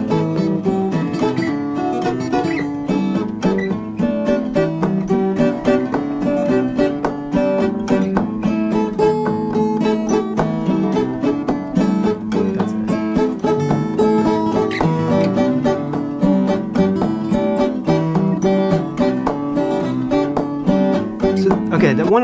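Malian desert blues played on two acoustic guitars, a thumbed bass line and a finger-picked melody pattern running at the same time in a steady, reggae-like rhythm, with a man singing over it.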